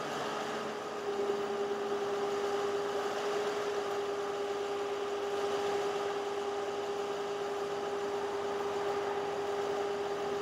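2009 GMC 5500 bucket truck idling with its PTO engaged to run the boom hydraulics, a steady whine over the engine that firms up about a second in.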